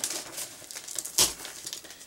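Cardboard packaging being handled: faint crinkling rustles of a box and its wrapping, with one sharper knock or rustle just over a second in.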